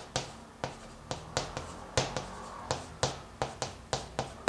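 Chalk writing on a chalkboard: an irregular run of sharp taps and short scrapes, about three or four a second, as each stroke of the characters is made.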